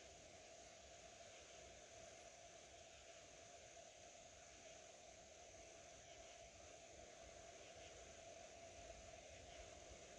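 Near silence: a faint, steady background hiss with no distinct events.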